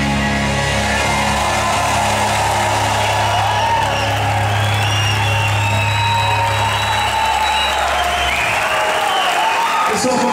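Live rock band's last held chord, with a low bass note, fading out near the end while the audience cheers and applauds.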